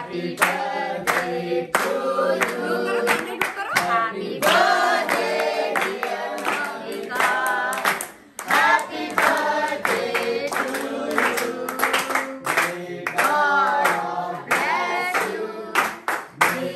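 A group of children and adults singing a birthday song together, clapping along in a steady beat, with a short break about halfway through.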